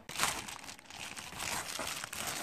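Plastic shipping mailer crinkling and rustling as it is handled, with a foil tuna pouch being pulled out of it; the crinkling is loudest just after the start.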